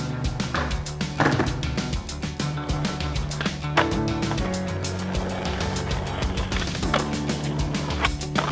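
Background music with a skateboard rolling on concrete and clacking as the board is popped and lands, three louder sharp hits standing out.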